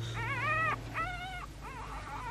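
A trapped tiger cub whimpering in distress: a few short, high, whining cries, each rising and then falling in pitch.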